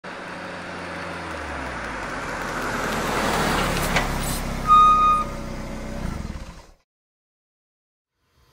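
Intro sound effect of a vehicle rolling in: a rumble that builds over about four seconds, a sharp click, then a short high beep. It fades and cuts out with a second or so left.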